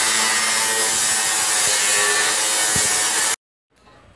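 Angle grinder cutting through a corrugated metal roofing sheet: a loud, steady, rasping cut that stops abruptly just over three seconds in.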